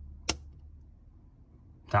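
A single sharp click of an MK miniature circuit breaker being switched off, isolating the lighting circuit that carries most of the earth leakage.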